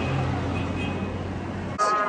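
Steady outdoor street noise with a low hum, typical of traffic. Music cuts in abruptly near the end.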